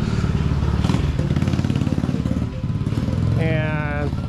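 Motor scooter engine running close by, a steady, fast low pulsing.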